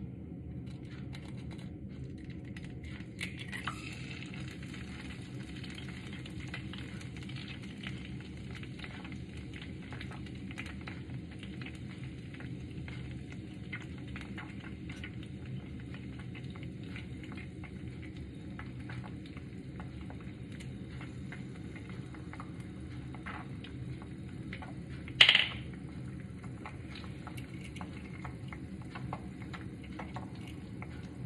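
An egg frying in a frying pan, with a steady sizzle and crackle that starts a few seconds in. There is one sharp knock about 25 seconds in.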